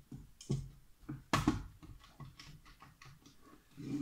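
Light clicks and taps from a pen on paper and a pocket calculator being picked up and handled. A sharper knock comes about one and a half seconds in, followed by a run of small quick clicks like key presses.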